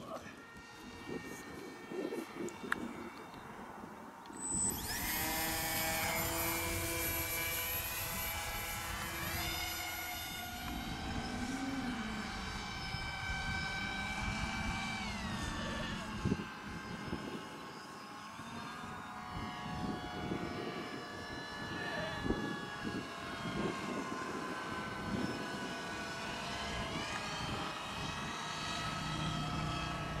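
Multirotor drone's electric motors and propellers whining in flight: several steady pitches that rise and fall together as it manoeuvres. The whine cuts in suddenly about four seconds in, after a quieter stretch.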